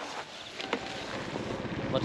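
Faint handling clicks. Near the end, the rumble of a vehicle riding over a rough dirt road rises in, with wind on the microphone.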